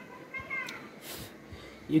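Two short high-pitched calls, each rising and then falling in pitch, in the first half-second or so. A brief soft hiss follows about a second in.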